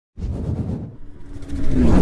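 Car engine rumbling and revving as a short logo-intro sound effect. It swells in the second half, its pitch falling at the loudest point.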